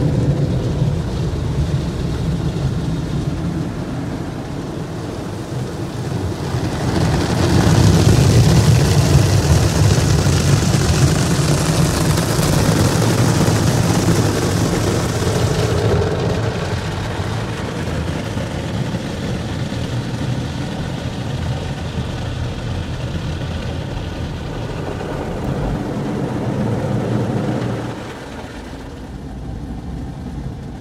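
Automatic conveyor car wash heard from inside the car: a steady low rumble of the wash machinery and brushes working over the car, joined about seven seconds in by a loud hiss of water spraying onto the body that cuts off suddenly about halfway through. The rumble drops near the end.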